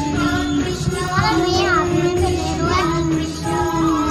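A Krishna bhajan playing: a voice sings a winding melody over a steady instrumental backing.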